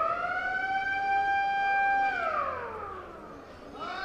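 A siren-like wail: one tone rises, holds steady for about two seconds, then falls away. A second wail starts rising near the end.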